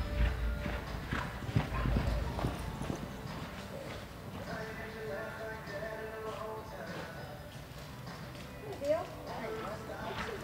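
Hoofbeats of a horse loping on soft arena dirt, heaviest and most thudding in the first three seconds, then fainter. Background music and faint voices run underneath.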